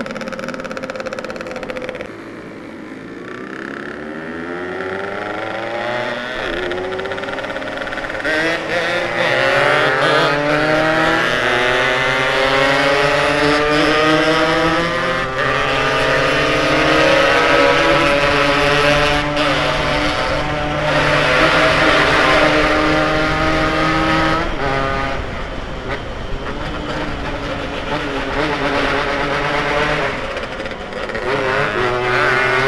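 Yamaha RX-King's two-stroke single-cylinder engine pulling hard on the move. Its pitch climbs steadily through the first ten seconds or so, stays high with small steps, and falls back about 25 seconds in as the rider eases off.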